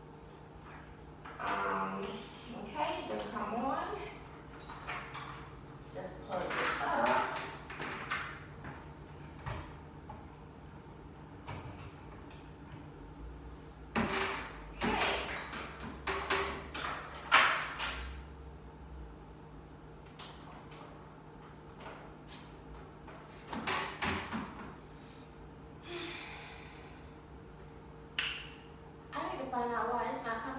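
Quiet talking off and on, with a few sharp clicks and knocks from handling a treadmill's console, over a steady low hum.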